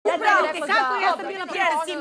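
Speech only: people arguing.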